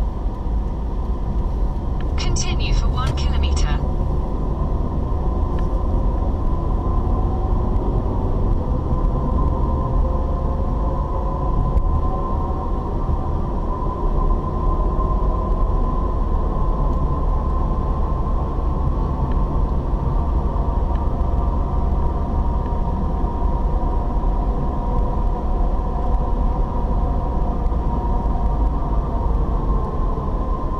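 Car cabin road noise from a moving car: a steady low rumble of engine and tyres, with a faint hum whose pitch drifts slowly. A brief higher-pitched chatter comes about two seconds in.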